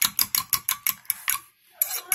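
A metal fork beating eggs in a ceramic bowl, its tines clicking rapidly against the bowl at about seven clicks a second. The beating stops about a second and a half in.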